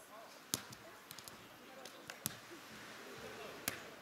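Volleyball struck by players' hands and forearms during a rally: three sharp slaps of the ball, roughly a second and a half apart, over faint voices.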